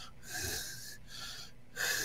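A man's breathy, wheezing laughter in three short gasping bursts.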